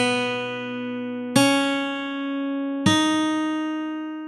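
Guitar playing the tab's melody slowly: single plucked notes about every second and a half, each ringing out and fading before the next, stepping a little higher in pitch.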